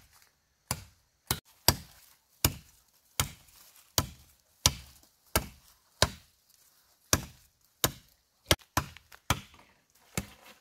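Machete chopping into a thin woody stem, about fifteen sharp strokes coming one after another at a steady, unhurried pace of roughly one to two a second.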